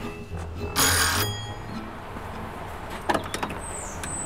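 A doorbell rings once, briefly, about a second in, over a low music bed that stops at the same moment. A few clicks follow near the end as the front door is opened.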